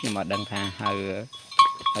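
A man speaking in short phrases, with a few brief, thin high-pitched tones sounding between them.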